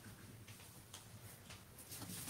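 Near silence: room tone with a steady low hum, a few faint ticks and a light rustle of large paper drawing sheets being handled.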